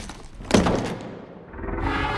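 Trailer sound design: a short knock at the start, then a heavy thud with a ringing tail about half a second in, over music that swells up near the end.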